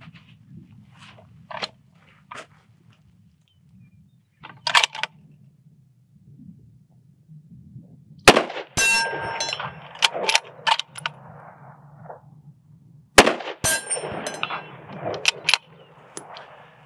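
Two bolt-action precision rifle shots about five seconds apart, fired from a standing supported position on a barricade, each followed by a long echo. Sharp metallic clicks of the rifle being loaded and its bolt worked come before and between the shots.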